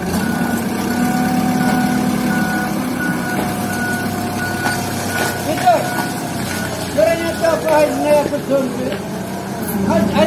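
Forklift's engine running with its reversing alarm beeping about twice a second at one steady pitch; the beeping stops about six seconds in and voices follow.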